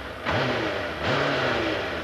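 Suzuki Hayabusa inline-four motorcycle engine blipped twice by hand, the revs rising and falling back each time. The throttle snaps shut with an elastic band helping its too-weak return spring.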